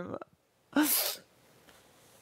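A woman's single short, breathy laugh, a puff of air about a second in.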